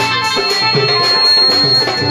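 Instrumental passage of live Saraiki folk music: tabla keeping a rhythm under a held melody line on a string or keyed instrument, with no singing.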